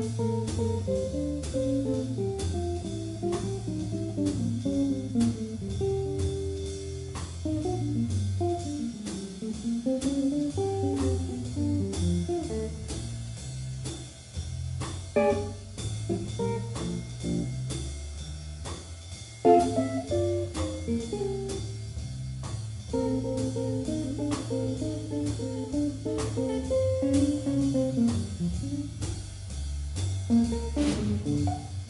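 Small jazz rhythm section: a hollow-body electric guitar plays running single-note solo lines over double bass and drum kit, with the horns silent. The lines thin out about halfway through, then pick up again after a sharp loud hit a few seconds later.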